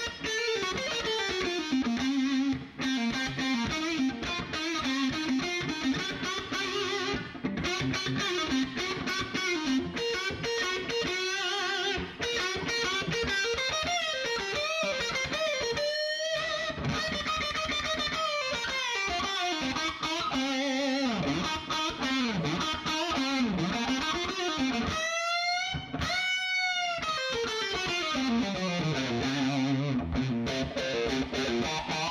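Solo electric guitar improvising lead lines in C minor, phrase answering phrase, each new line starting on the notes the previous one ended with. Near the end a held note with wide vibrato, then a falling run.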